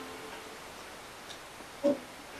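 Steady low hiss as the last of the music dies away, with a faint tick partway through and a single short, sharp blip near the end.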